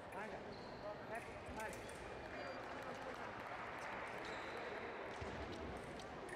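Fencers' feet tapping and stamping on the piste as they move, over the talk of voices in the hall.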